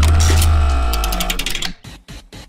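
A short news-bulletin transition stinger: a deep boom under a ringing chord, with a quickening run of ticks, fading out and cutting off shortly before the end.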